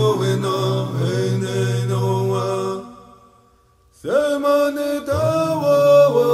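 A man chanting a Native American Church peyote song in vocables, held notes over a steady low tone. The singing fades out a little before the middle, leaving about a second of near silence, then comes back with a rising swoop into the next line.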